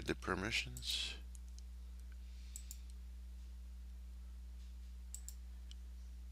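A few faint computer mouse clicks in two small clusters, over a steady low electrical hum on the recording.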